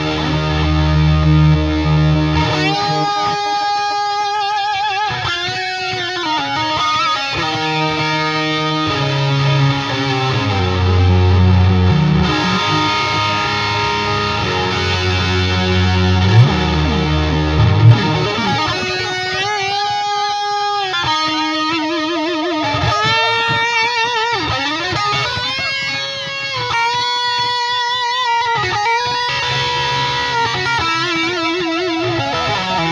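Distorted electric guitar played through an Eventide H9 harmonizer effects pedal and a Victory Silverback valve amp head. Heavy low notes alternate with higher held notes for the first half. The second half is a higher lead line with wavering vibrato.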